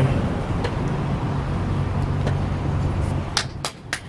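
Steady low hum of road traffic, then a few quick sharp taps near the end as a hand slaps a sticker onto a wall and presses it flat.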